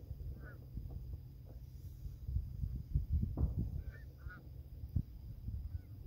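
Low wind rumble on the microphone with a few faint bumps, and a few faint, short bird calls about half a second in and again around four seconds in.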